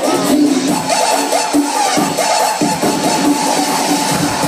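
Loud dance-club music from a DJ set: a repeating melody line over the beat, with the deep bass pulled out for roughly the first two and a half seconds.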